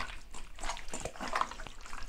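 Raw chicken pieces worked by hand in a liquid marinade in a stainless steel bowl: irregular wet squelching and sloshing as the meat is turned and pressed.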